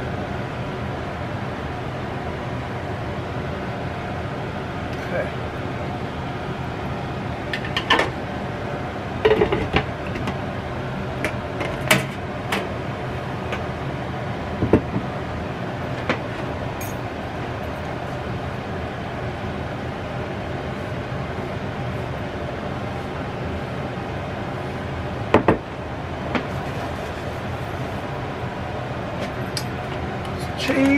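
A steady mechanical hum throughout, with a few scattered clinks and knocks of a spoon against a ceramic bowl and the skillet as chili is dished up, the sharpest near the middle and one more near the end.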